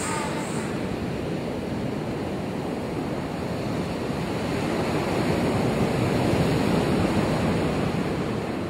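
Ocean surf breaking on a sandy beach: a steady wash of waves that swells a little about five seconds in.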